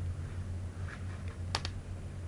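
Two quick, light clicks close together about a second and a half in, with a fainter tick before them, over a steady low hum.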